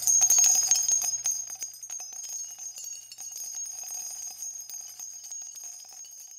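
Jingling bells in a quick flurry of small strikes, loudest at first, then thinning out and fading away near the end.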